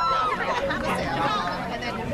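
Voices calling and chattering in the open air. A long held shout ends just after the start, and overlapping talk follows.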